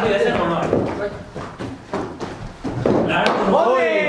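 People talking, with a single sharp crack of a cricket bat striking the ball about three seconds in.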